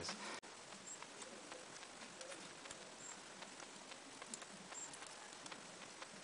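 Faint, irregular small clicks from a metal wristwatch and its link bracelet being handled and its crown and pushers worked, with one sharper click about half a second in.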